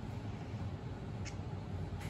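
Quiet room tone with a steady low hum, and one faint, light click a little past halfway.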